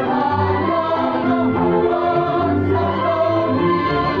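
Mixed church choir singing in parts, men's and women's voices together, holding long notes.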